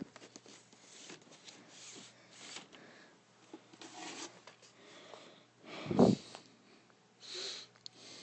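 Handling noise: light rustling and clicking of plastic DVD cases and the handheld camera, with a dull thump about six seconds in and a short hiss near the end.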